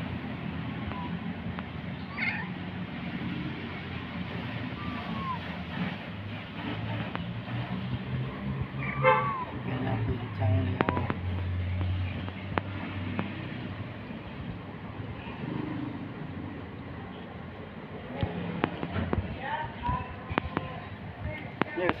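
Calico kitten meowing now and then, short high cries, the loudest about nine seconds in; these are the cries of a kitten in pain from a swollen hind leg as it tries to walk. A low steady hum runs underneath.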